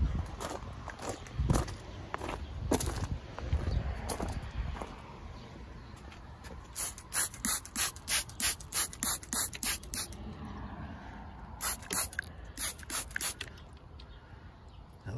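Hand trigger spray bottle squirting water onto rough rock, a string of quick squirts at about three a second, then a pause and a second shorter string near the end.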